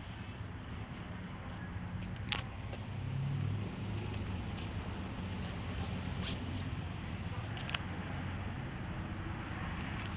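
Handling noise from a phone held while walking outdoors: rustling and a few sharp clicks as a hand covers the microphone, over a steady low rumble of street noise.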